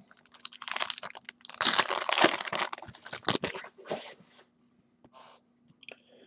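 Foil trading-card pack wrapper crinkling and being torn open by hand, loudest about two seconds in and dying away after about four seconds, over a faint steady hum.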